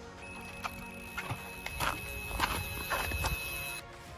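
Carp bite alarm sounding one continuous high tone during a run as a fish takes line, with irregular clicks and knocks alongside it; the tone cuts off suddenly near the end.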